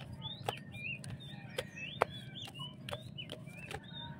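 Chickens clucking amid many short, high chirping calls, with a run of sharp light clicks about every half second.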